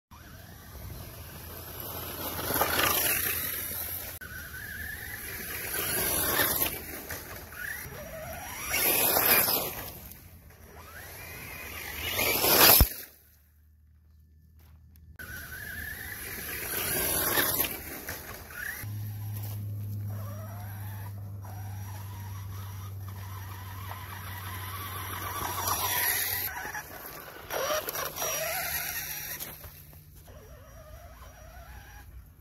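Electric RC cars driving back and forth past a ground-level microphone, their motors whining up and down in pitch as they pass, several times. About 13 seconds in there is a single sharp crack, followed by a moment of near silence.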